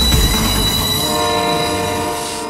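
Passing freight train's low rumble dying away, then a diesel locomotive's air horn sounding a steady chord of several notes from about two-thirds of a second in, held to the end.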